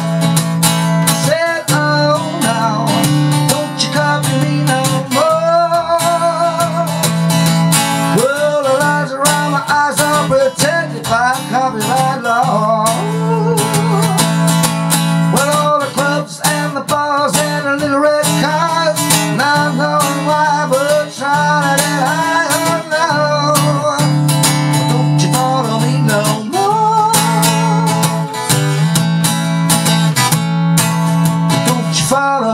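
Acoustic guitar played as a blues: chords strummed over a repeating low bass note, with picked lead lines of wavering, bent notes.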